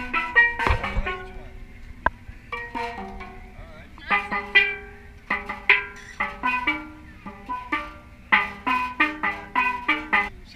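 Steel pans (steel drums) struck with rubber-tipped sticks by two players, a run of ringing pitched notes at an uneven pace of a few notes a second. A dull knock sounds about half a second in.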